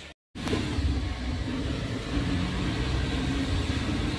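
Steady engine and road rumble heard inside the cabin of a moving vehicle. It starts suddenly about a third of a second in, after a brief dropout.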